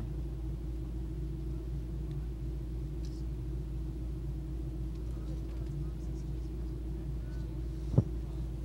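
A steady low hum with a faint rumble under it, unchanging throughout, and a brief tick at the very end.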